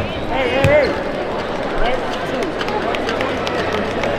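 Crowd chatter in a basketball arena, with a basketball bouncing on the hardwood court twice near the start as a free throw is set up.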